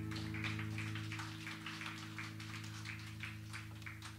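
Scattered applause from a small audience: sparse, uneven hand claps over the dying ring of an acoustic guitar's last chord.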